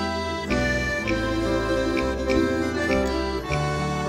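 Canarian folk ensemble playing an instrumental passage: accordion holding sustained notes over plucked guitars and lutes, with the bass notes changing every second or so.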